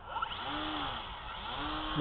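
Motor and propeller of a small RC airplane in flight, a buzzing drone whose pitch rises and falls twice.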